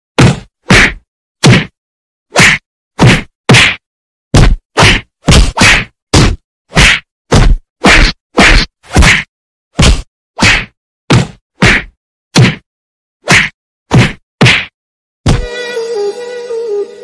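A fast run of dubbed-in whack sound effects for stick blows, about two a second, with dead silence between the hits. The hits stop near the end as music comes in.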